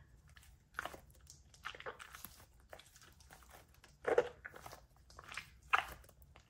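A soft squishy stress ball squeezed in the hands, giving faint, irregular short squishes and crackles, with louder ones about four seconds in and near the end.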